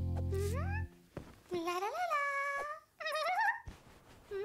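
A held low musical chord cuts off about a second in. After it come a cartoon girl's wordless high-pitched vocal sounds: three rising, whining 'hmm'-like efforts, the last one wavering, as she strains at a small suitcase.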